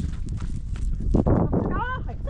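Wind rumbling on the microphone, with a brief rush of noise just past the middle and a rising cry starting near the end.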